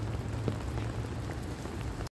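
Steady rain, with drops pattering on an umbrella held just overhead and a few sharper drop taps, one standing out about half a second in.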